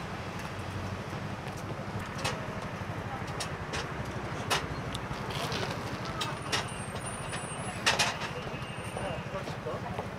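A motor vehicle engine idling close by, a steady low rumble with an even pulse. Several short sharp clicks sound over it, the loudest about eight seconds in.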